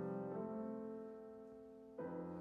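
Steinway grand piano playing alone: soft held chords that change about half a second in and slowly fade, with a new chord struck at the end.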